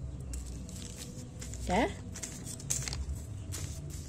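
Light crinkling of an aluminium-foil play mat and soft scrapes of plastic spoons in play sand, with a few scattered faint clicks.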